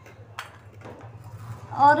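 Soaked almonds being peeled by hand over small stainless steel bowls: quiet wet handling with one light click against the steel about half a second in, over a low steady hum. A woman's voice begins near the end.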